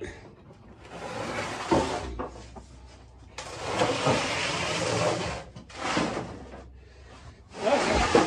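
A galvanized steel bin loaded with old iron tool heads being slid across a concrete floor: several long scraping drags, with a knock not quite two seconds in.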